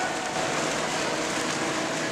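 Steady wash of water splashing from several water polo players swimming hard.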